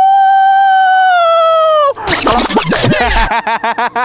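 A man's long, high-pitched held yell lasting about two seconds, then loud bursts of laughter.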